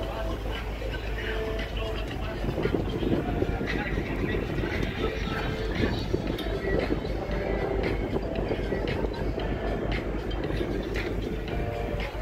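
Excursion boat under way: its engine runs with a steady low rumble, with indistinct voices and music in the background.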